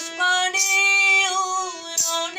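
A boy singing a long held note of a Bengali song, with the note wavering slightly, to harmonium accompaniment.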